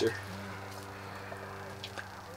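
A faint, steady low hum, with a soft click near the end.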